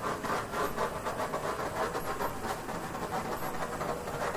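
Handheld torch flame hissing steadily as it is passed over a wet acrylic pour to pop air bubbles in the paint.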